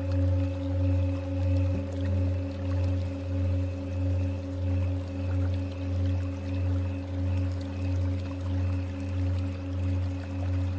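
Tibetan singing bowls ringing in a sustained, layered drone, the deep tone swelling and fading about every three-quarters of a second. A bowl is struck about two seconds in and adds a higher tone to the ringing.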